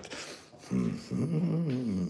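A man's closed-mouth hum, low and wavering in pitch, starting under a second in and lasting about a second and a half.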